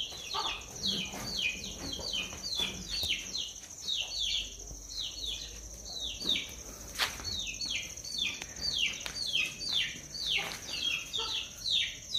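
Small birds chirping: a rapid, overlapping run of short chirps, each falling in pitch, several a second, over a steady high-pitched whine. A single sharp click comes midway.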